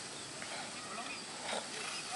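Steady outdoor background noise with faint, scattered voices and short calls.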